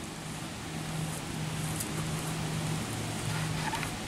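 Quiet outdoor background noise with a faint, steady low hum that drops in and out, and a few faint ticks.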